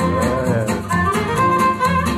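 Gypsy jazz swing recording: a violin plays the melody with wide vibrato over a steady beat of strummed guitar chords, about four strokes a second.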